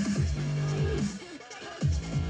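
Dubstep track playing through a Bose SoundLink Mini II portable Bluetooth speaker. It drops quieter for about half a second past the middle, then comes back.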